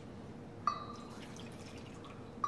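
A glass cruet clinks once against a metal chalice about two-thirds of a second in, ringing briefly, then wine trickles from the cruet into the chalice.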